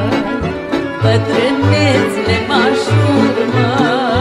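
Live Romanian folk band playing an instrumental passage between sung verses: a fiddle carries a wavering, vibrato-laden melody over a steady, repeating bass beat.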